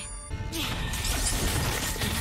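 Cartoon crash sound effect that hits about half a second in and carries on as a sustained noisy rush, with background music underneath.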